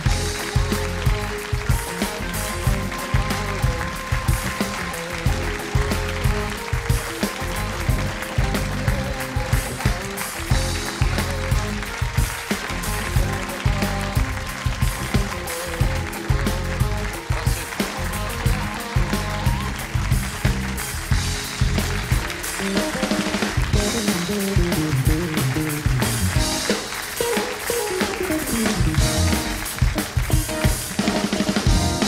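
Live house band playing upbeat walk-on music, electric bass and drum kit keeping a steady beat.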